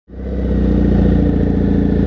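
Motorcycle engine idling steadily, fading in at the start.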